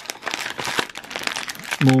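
Small plastic bag crinkling and rustling in the hands, a bag of bicycle cleat screws being handled.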